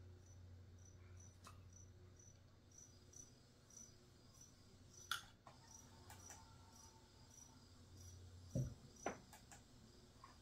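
Faint cricket chirping in a steady run of evenly spaced high chirps, over a low steady hum. A thump and a couple of clicks come near the end.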